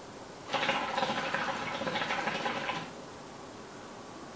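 Hookah bubbling as a long draw is pulled through the hose and the water in the base. It starts about half a second in and lasts a little over two seconds.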